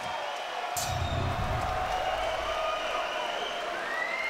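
Arena crowd cheering and applauding as a fighter is announced. A sharp bang comes about three-quarters of a second in, followed by a low rumble lasting about a second.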